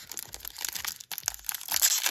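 Foil wrapper of a Pokémon booster pack crinkling and crackling in the fingers as its sturdy crimped top is worked open, with a louder patch of crackling near the end.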